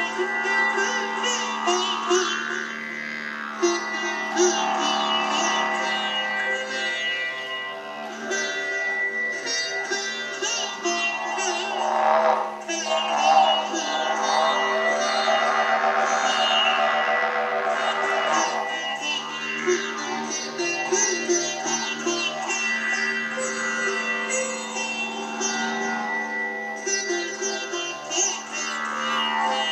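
Sitar played live: a fast, ornamented plucked melody with gliding, bent notes over a steady drone. A coiled wind instrument blown alongside adds to the sustained drone.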